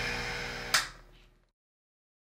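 Steady hiss and hum of a hot air rework station's blower, fading away, with one sharp click less than a second in before the sound dies out.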